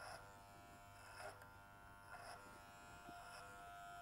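Electric hair clippers running with a faint, steady buzz as they cut hair over a comb at the nape, swelling softly three times as they pass over the hair.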